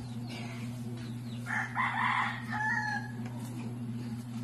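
A rooster crows once, starting about a second and a half in and lasting about a second and a half, with a rough middle and a held, thinner ending. A steady low hum runs underneath.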